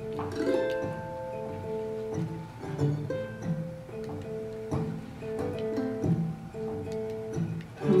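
Mandolin playing an instrumental break of quick plucked single notes in a folk song, without vocals.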